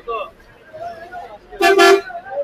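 A vehicle horn honks twice in quick succession near the end, loud and brief, over the murmur of market voices.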